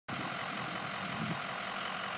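Steady outdoor background noise with a faint vehicle engine running.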